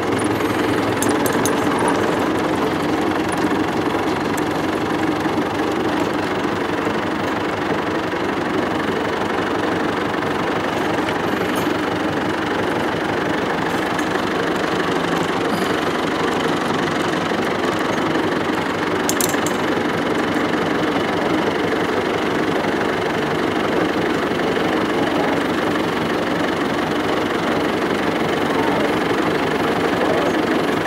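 Massey Ferguson 65 tractor's engine running steadily as the tractor is driven along, heard from the driver's seat.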